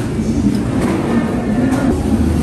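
Shopping cart wheels rolling over a smooth, hard supermarket floor, with the cart and its plastic basket rattling in a steady low rumble.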